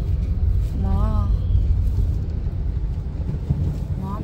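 Muddy floodwater rushing across a road, a steady low rushing noise, with a voice calling out briefly about a second in.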